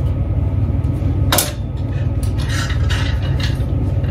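Wooden clothes hangers being handled on a metal clothes rail: one sharp clack about a second and a half in, then rustling and scraping of hangers and knit garments, over a steady low hum.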